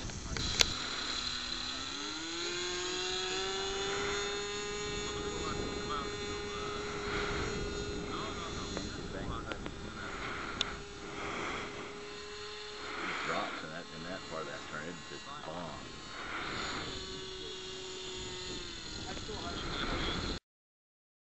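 Radio-controlled autogyro's motor and propeller droning steadily in flight. The pitch rises about two seconds in as the throttle is opened for a climb, holds, and drops back near the end. A couple of sharp clicks come right at the start.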